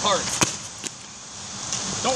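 A plastic Coke bottle knocking once on an asphalt road about half a second in, followed by a fainter tap.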